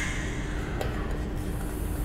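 Steady background hiss with a faint low hum, and one light click about a second in.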